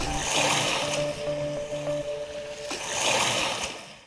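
Short radio-station ident music: a held synth tone over a repeating low note, with two swells of rushing, surf-like noise, one near the start and one near the end, fading out at the close.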